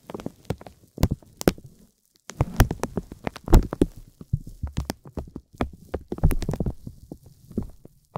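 Thin, hard vinyl film being crinkled by hand: irregular clusters of sharp crackles, with a brief pause about two seconds in.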